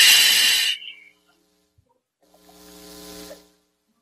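A diver's breath exhaled through a full-face mask regulator: a loud hiss of venting air and bubbles lasting under a second. About two seconds later a second, fainter hiss follows, with a steady low hum under it, for about a second.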